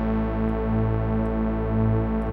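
A synthesizer note held steady, from a sawtooth-wave lead patch in Reason whose Malström oscillator B is being fine-tuned in cents against oscillator A. The detuned oscillators make the harmonics beat slowly.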